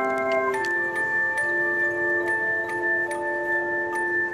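Handchime ensemble playing: aluminium handchimes are struck in chords, and each tone rings on and sustains. A new chord comes in about half a second in, and further single notes enter over the rest.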